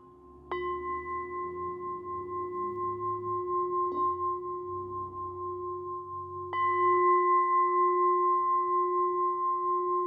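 A large black metal bowl bell struck with a wooden striker, rung firmly about half a second in and again about six and a half seconds in, with a light tap near four seconds. Each strike gives a long, steady, ringing tone with several pitches. It is tolled once a minute to mark the nine minutes of a kneeling vigil.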